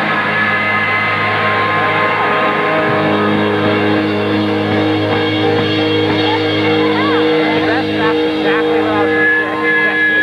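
Punk rock band playing live: loud distorted electric guitar chords held over bass and drums, with the bass note changing about seven and a half seconds in.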